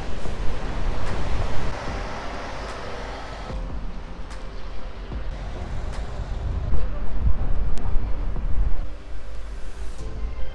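City street ambience: road traffic going by, with wind noise on the microphone.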